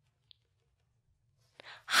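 A pause of near silence with only a faint low room hum, then a quick intake of breath near the end as a woman gets ready to speak, and her excited exclamation begins.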